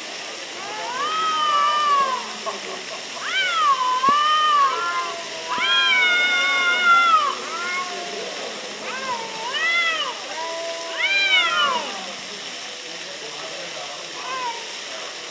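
Two cats yowling at each other in an aggressive standoff: about five long, wavering yowls that rise and fall in pitch, with short gaps between them.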